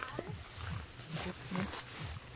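Footsteps and the rustle of grass and leafy brush as people push through dense undergrowth on foot, with irregular low thuds of walking and short scrapes of leaves.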